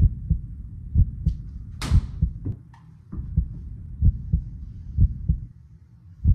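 Rhythmic low thuds repeating about three times a second, with one sharper knock about two seconds in.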